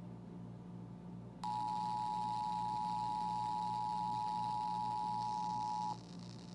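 Emergency Alert System two-tone attention signal (853 and 960 Hz sounding together) heard through a Sangean portable radio's speaker: a steady tone that comes on sharply about a second and a half in and cuts off after about four and a half seconds, announcing an EAS alert, here the IPAWS Required Weekly Test. Before it, only a low hum and hiss from the radio.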